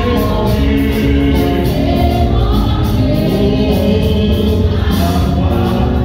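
Loud, amplified gospel worship music: voices singing held notes over instruments with a steady beat.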